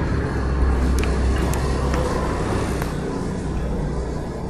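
Steady low rumble with a faint noisy hiss, easing slightly over the few seconds, with a few faint light ticks.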